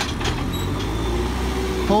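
JCB 3CX backhoe loader's diesel engine running steadily under load as the loader arm lifts a full bucket of mud.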